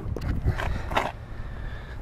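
Low, irregular rumble of handling noise on a handheld camera's microphone, with a few faint taps and clicks.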